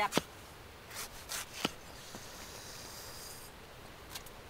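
A large kitchen knife (machete-style) slicing through a raw banana blossom: about four crisp cuts in the first two seconds, then a soft rustling hiss.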